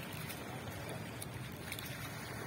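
Small waves washing in over a pebbly shore, a steady rushing wash with a few faint brief clicks.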